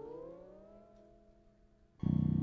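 Solo electric bass: a ringing note and its overtones glide smoothly upward in pitch over about the first second, then hold and die away to near silence.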